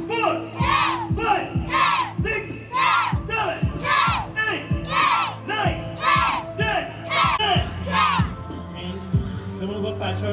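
A group of children doing a karate drill shout together in unison, one short sharp shout about once a second in time with their moves, stopping about eight seconds in. A steady low hum runs underneath.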